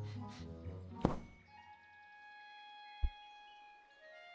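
Film score with knocks and low rustling in the first second, a sharp loud thunk about a second in, then a held chord with a soft low thump near the end.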